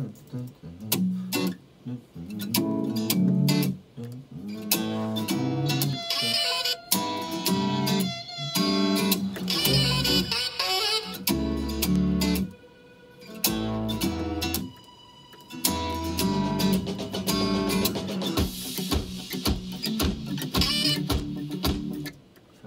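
A music track playing from a computer, with plucked guitar-like notes over a bass line, pausing briefly a couple of times and cutting off suddenly near the end.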